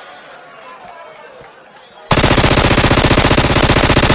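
Sampled machine-gun fire in a dubstep track: after a quiet stretch, a sudden, very loud rapid-fire burst begins about halfway in, with many shots a second.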